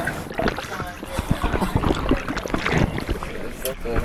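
Water splashing and sloshing, with brief snatches of a voice.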